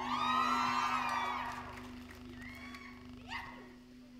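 A long whoop that rises and falls over about a second and a half, followed by a couple of shorter calls. A steady low tone holds underneath.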